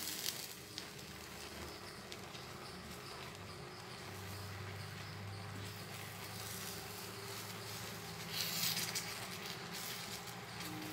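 Wooden spatula stirring thick, bubbling custard in a metal pan: faint soft scraping and patter, with a brief louder rasp about eight seconds in. A faint low hum joins about four seconds in.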